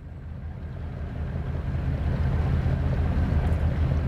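Boat engine running steadily with a low hum, getting louder throughout.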